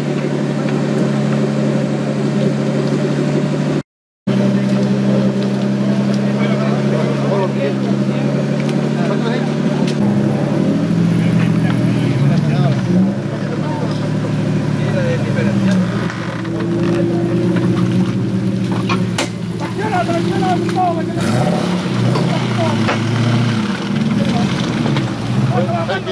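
Two off-road 4x4 engines running at idle, steady for about ten seconds, then revving up and down under load as one tows the other out of deep mud on a strap. A brief cut to silence about four seconds in.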